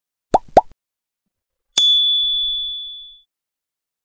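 Sound effects of an animated subscribe-button end card: two quick mouse-click pops, then a bright bell ding about two seconds in that rings out for about a second and a half.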